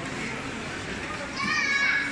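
General chatter of people, with a child's high-pitched shout, the loudest sound, breaking in about a second and a half in and lasting about half a second.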